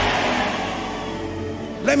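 A congregation's shouting response fading away over steady held background music chords. A man's voice comes in near the end.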